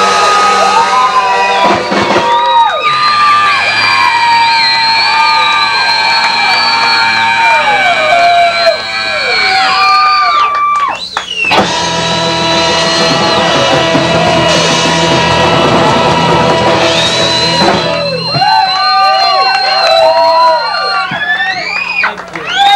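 A live ska band playing, with saxophone and horns holding long notes over guitar and drums, and a brief break about halfway through.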